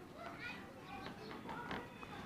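Faint, distant voices in the background, with a few soft taps.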